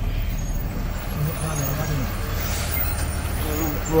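Diesel truck engine running with a steady low rumble, with faint voices over it.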